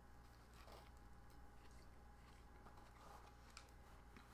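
Near silence: faint chewing of a bite of Big Mac, with a few soft clicks over a low steady hum.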